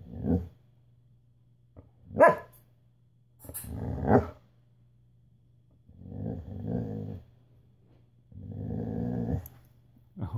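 A dog vocalising in five short outbursts, a sharp one about two seconds in the loudest and the last two drawn out to about a second each, as it begs for the dinner being offered to it.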